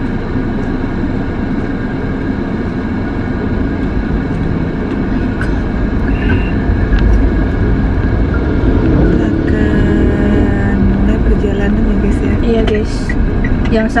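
Steady engine and road rumble inside the cabin of a moving car.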